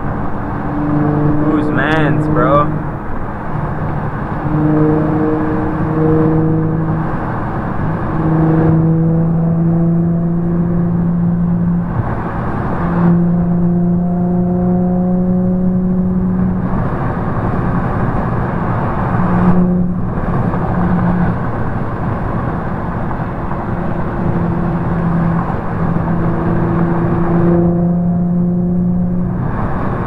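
Steady road and engine noise inside an Infiniti G35 sedan cruising at highway speed. Over it run held low tones that step to a new pitch every few seconds, and a voice is heard briefly near the start and at the end.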